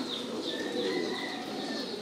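Many caged domestic pigeons cooing together in a steady chorus, with short high chirps repeating over it.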